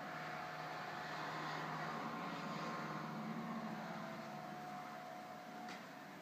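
Steady background hum with a broad hiss that swells slightly in the middle and then eases off; a faint steady tone runs through it.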